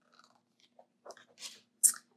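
Paper pages of a large picture book being turned: a few soft rustles and crinkles, ending in one sharper flick of paper just before the end.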